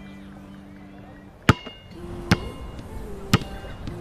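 A basketball bouncing on a hard court: three sharp bounces about a second apart, each with a brief ringing note, the first the loudest.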